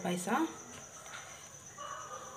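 A rooster crowing: the end of a call, a held note sliding upward, stops about half a second in. After it there is only faint background.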